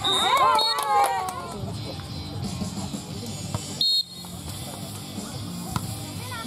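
Referee's whistle blowing as a rally ends, over a second or so of players and onlookers shouting, then a second short, sharp whistle blast just before four seconds in that clears the next serve.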